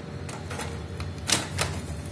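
Plastic and sheet-metal parts of a disassembled Kyocera laser printer clicking and knocking as they are handled, about four sharp clicks with the loudest a little past halfway, over a steady low hum.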